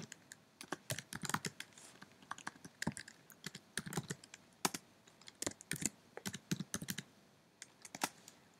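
Typing on a computer keyboard: quick, irregular runs of key clicks, with a short pause near the end.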